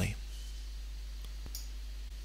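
Two faint computer mouse clicks close together a little over a second in, over a steady low hum.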